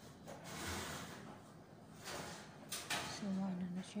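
Glass baking dish being taken out of an oven: the oven is opened and the dish drawn across the metal rack, with two sharp clicks of glass against metal a little under three seconds in.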